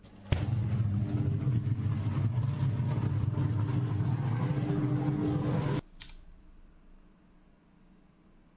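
Electrical arc flash in a high-voltage switchgear cabinet: a sudden blast, then a loud, harsh, buzzing noise from the arc that lasts about five seconds and cuts off abruptly.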